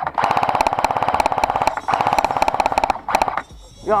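Airsoft rifle firing on full auto: a long burst of rapid, evenly spaced shots, a brief break, a second burst of about a second, and a short third burst just after three seconds in.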